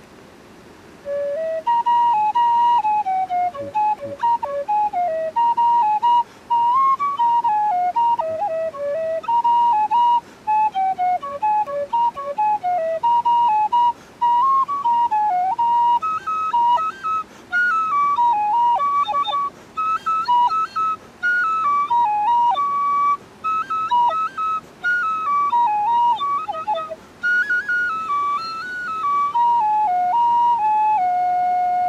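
Tin whistle playing a melody of separate notes, starting about a second in; the tune moves higher in its second half.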